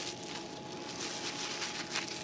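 Soft rustling and crinkling of a wrapping sheet being pulled off a new handheld thermal imaging camera.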